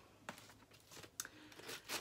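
Scissors cutting into mail packaging: faint crunching and crinkling with a few sharp clicks.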